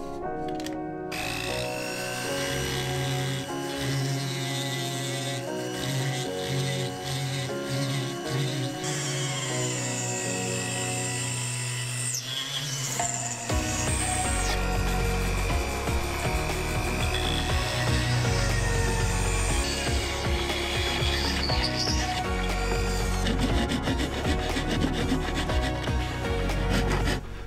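Foredom SR flex-shaft rotary tool running, its whine rising and falling in pitch, as the bit grinds a square recess into elm burr wood.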